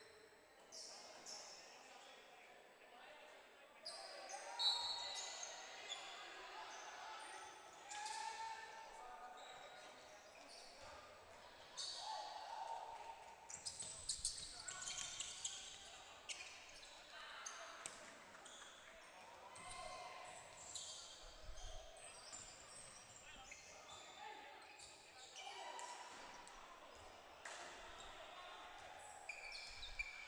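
A basketball bouncing on a hardwood gym floor during play, with sharp thuds scattered through, echoing in a large hall.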